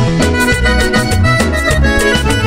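Panamanian música típica: accordion-led dance music over bass and percussion, with a steady, quick beat.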